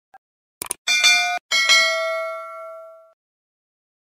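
Subscribe-and-bell intro sound effect: a short click, then two bright bell dings. The first ding is cut off sharply; the second rings out and fades away about three seconds in.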